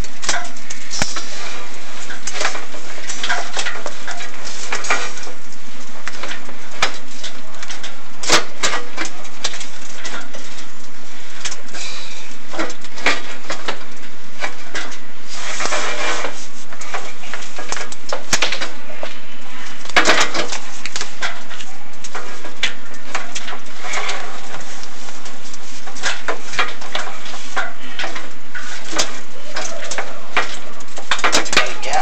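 A chimney inspection camera scraping and knocking against the flue walls as it is lowered, giving irregular clicks and rubbing over a constant hiss and hum.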